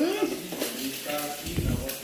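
An egg frying in a pan on a gas stove, sizzling steadily. There is a soft low bump shortly before the end.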